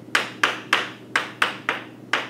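Chalk striking a blackboard in quick short strokes, about seven evenly spaced taps, as tick marks are drawn along a graph's axes.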